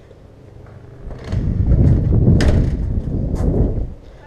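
Loud, irregular low rumbling and rustling on the camera's microphone, starting about a second in and cutting off suddenly near the end, with a sharp click about halfway through. It is the buffeting and handling noise of a body-worn camera as its wearer steps out through a doorway.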